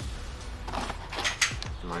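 Metal clicks and scraping of a Taurus G3-series 9 mm pistol's slide and recoil spring assembly being handled and slid onto the frame during reassembly, with a sharp click about a second and a half in.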